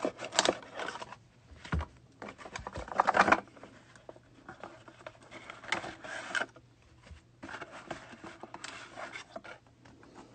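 Baseball trading cards being slid out of a cardboard-and-plastic pack box and set onto a stack, a few short bursts of cards and cardboard rubbing and scraping against each other.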